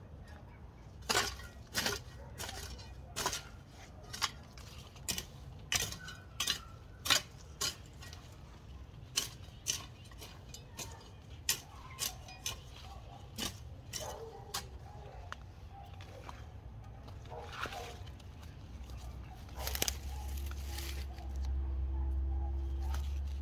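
Metal hoe blade chopping into soil, a run of sharp clinking strikes about one to two a second that stops about two-thirds of the way through. A low rumble builds near the end.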